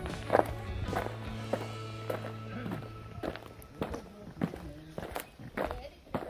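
Footsteps on a concrete path, a steady walking pace of about two steps a second, over background music with long held notes.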